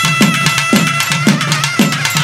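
Naiyandi melam, Tamil folk drum-and-pipe music in an Amman invocation beat. Thavil drums play a fast, even rhythm with deep, falling strokes about twice a second, under a held nadaswaram note.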